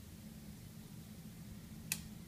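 A single sharp click near the end, a relay on the robot's relay board switching on, over a faint steady low hum.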